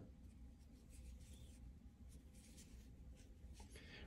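Near silence with faint, brief scratchy rubbing of cotton yarn drawn over a metal crochet hook as single crochet stitches are worked.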